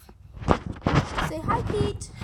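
A toddler babbling close to the microphone: short, wordless voice sounds, mixed with a few knocks.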